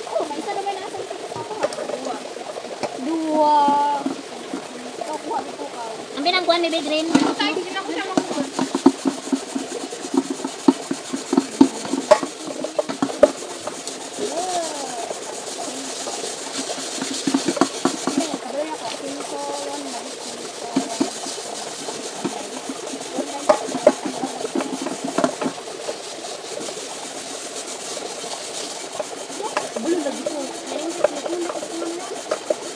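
Metal cooking pots being scrubbed and rinsed by hand in a shallow river: many small clinks and scraping knocks over running, splashing water, with brief voices now and then.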